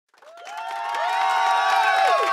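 A crowd cheering, many voices at once, fading in from silence over about the first second and then holding steady.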